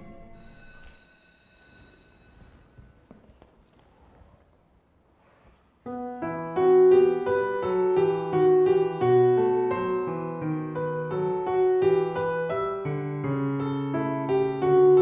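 Faint high ringing tones fade away, then a few quiet seconds. About six seconds in, solo piano music starts suddenly and plays on.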